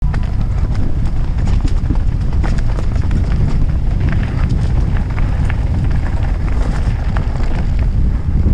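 Norco Aurum downhill mountain bike descending rough trail at speed: a heavy rumble of wind on the microphone and tyres on dirt, with a constant irregular clatter of chain, frame and wheels hitting rocks and roots. The sound starts abruptly.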